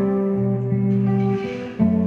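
Guitar playing an instrumental passage of a live song: sustained chords, with a brief lull and then a new chord struck near the end.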